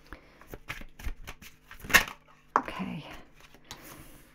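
A tarot deck being shuffled by hand: a run of short card clicks and riffles, the sharpest about halfway through. Near the end a card is drawn from the deck and laid on the table.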